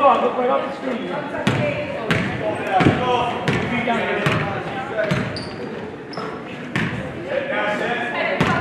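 A basketball being dribbled on a hardwood gym floor, a sharp bounce every second or less, with voices around it in the echoing gym.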